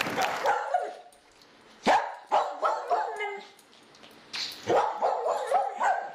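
Short, high-pitched animal calls in bursts: one sharp call about two seconds in, a quick run of shorter calls after it, and another run near the end.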